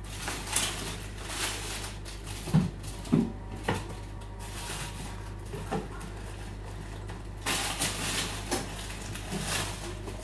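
Baking paper being handled, rustling and crinkling in repeated swishes, with a few light knocks of kitchen things about two and a half to four seconds in and again near six seconds.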